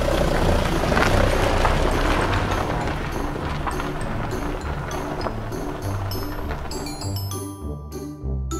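Water pouring from a tipped plastic toy dump truck bed into a plastic toy pool, a rushing splash that is loudest about a second in and then tapers off. Background music with a repeating bass line plays throughout.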